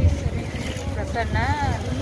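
Outdoor wind buffeting the microphone as a steady low rumble, with a woman's voice briefly rising and falling over it.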